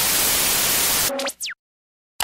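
Loud burst of static hiss, like an untuned TV, that cuts off about a second in into a short electronic glitch with quick falling pitch sweeps.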